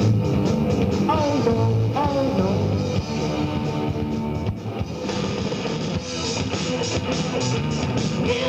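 Hard rock band playing live: electric guitar, bass and drum kit, with sliding, bending notes about one and two seconds in.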